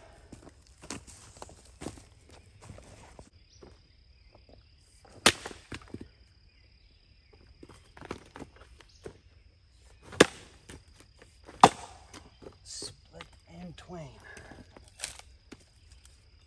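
Axe blows splitting wood rounds on the ground: a few sharp chops, the loudest about ten seconds in, with footsteps and the shuffle of wood chips and split pieces between them.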